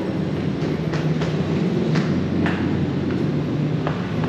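A steady low machine hum, with footsteps going down tiled stairs heard as a few scattered light knocks.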